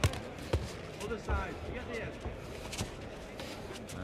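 Arena crowd murmur with scattered shouts during a boxing bout, broken by a few sharp thuds of gloved punches and footwork on the ring canvas.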